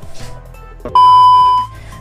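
A single steady, high-pitched electronic beep, about three-quarters of a second long, starting about a second in, over quiet background music.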